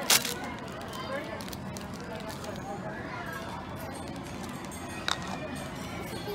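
Foil toy wrapper crinkling and tearing in a short, loud burst right at the start, with another brief crackle about five seconds in, over people's voices chattering in the background.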